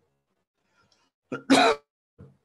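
A person coughs once, short and loud, about a second and a half in.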